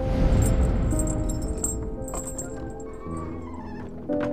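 Background music with held tones. At the start a heavy low rush rises as wooden double doors are pushed open and fades over about two seconds, with metal chain clinking.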